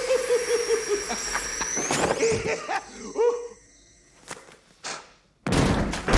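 Film sound effect of a man being electrocuted by a hand buzzer: a wavering electric buzz that fades within the first second or so, with a thin high whine rising and stopping about two seconds in. Then comes a near-quiet stretch with a few knocks, and a sudden loud burst of noise just before the end.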